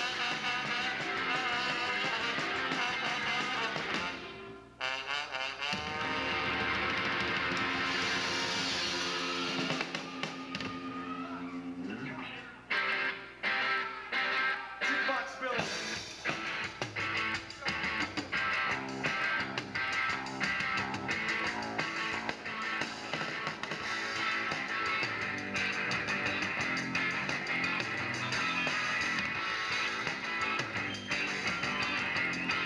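Rock band playing live, with trombone and electric guitar over bass and drums. After a brief drop about four seconds in, long held chords play until about twelve seconds, then short chords with gaps between them, then a steady strummed groove from about sixteen seconds on.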